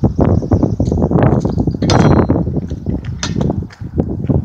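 Footsteps crunching on gravel ballast, a dense run of irregular crackling steps, over a steady low rumble of wind on the microphone.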